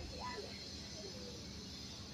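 Quiet outdoor background with faint, distant voices and a steady faint hiss; no splash or other distinct event.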